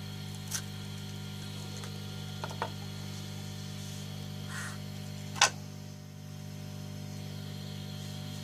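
A few short metal clicks and taps from an ECU's metal lid and a screwdriver against its housing as the lid is pried open and swung back, the loudest about five and a half seconds in, over a steady low hum.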